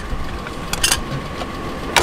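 A few sharp clicks and knocks as a small metal part is set back into the storage compartment of the car's trunk: one at the start, a quick double clatter just under a second in, and one at the end. A steady low hum runs underneath.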